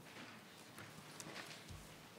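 Near silence: quiet room tone with a few faint scattered taps and a brief low thump near the end.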